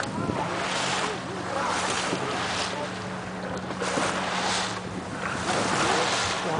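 A small boat's motor running with a steady low hum, under wind buffeting the microphone and water washing against the hull.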